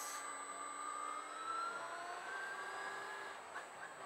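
Quiet electric motor whine of a motorcycle or scooter pulling away, its pitch stepping slowly upward as it gathers speed, over low road and wind hiss.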